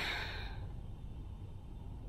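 A woman's weary sigh: one breathy exhale right at the start that fades within about half a second, the sound of exhaustion. A faint low hum lies underneath.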